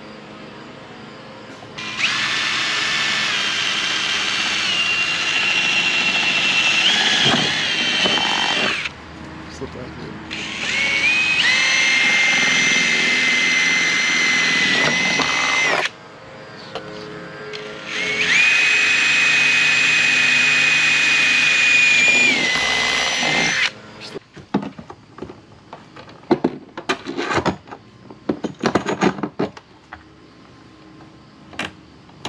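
Cordless drill running in three long spells of several seconds each at the diesel heater's port on the trailer's aluminum side wall. Its motor whine steps up and down in pitch as the trigger is worked. Near the end, a run of irregular clicks and knocks.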